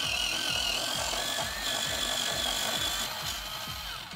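Bostitch electric pencil sharpener running with a pencil pushed in: a steady, slightly wavering motor whine with the rasp of its cutters shaving the wood. It cuts off just before the end, once the pencil is sharp.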